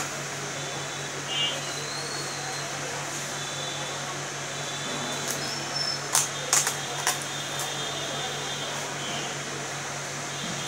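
A steady machine hum fills the room, and about six to seven seconds in come a few sharp clicks and crinkles as a cardboard selfie-stick box is handled and picked open at its end.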